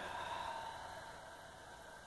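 A faint, breathy exhalation that trails off over about a second and a half, leaving only low room noise.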